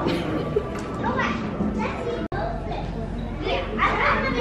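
Indistinct chatter of several voices in a busy room, children's voices possibly among them, with a sudden brief cut in the audio a little past two seconds in.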